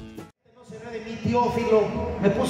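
Music that cuts off just after the start, a brief gap of near silence, then a man talking into a stage microphone.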